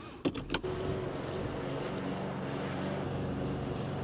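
Two quick clicks of a seatbelt buckle latching, then a car engine idling with a steady low hum, heard from inside the cabin.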